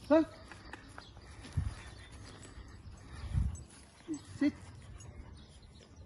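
A German Shepherd giving a few short barks, one right at the start and two close together about four seconds in, with two low thumps in between.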